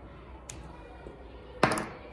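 A glue stick rubbing faintly over the back of a paper cut-out, with a small tap about half a second in. A short loud vocal sound near the end.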